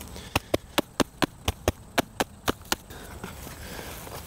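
A hand slapping the bottom of an upturned plastic five-gallon bucket, about eleven sharp knocks at roughly four a second, knocking the soil and potatoes loose so the bucket can be lifted off. The knocks stop a little before three seconds in.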